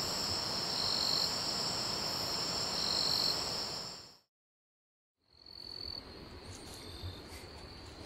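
Chorus of night insects: a steady high-pitched trilling with a pulsing note beneath it. It fades out about four seconds in, drops to silence for about a second, then comes back quieter.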